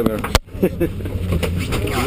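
Steady low rumble inside a moving vehicle's cabin, under fragments of men's voices. There is one sharp knock on the camera about a third of a second in, as a glass object bumps the lens.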